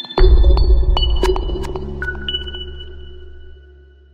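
Electronic music sting for a logo intro: a deep bass boom about a quarter-second in that slowly fades away, with a few sharp clicks and high pinging notes ringing over it.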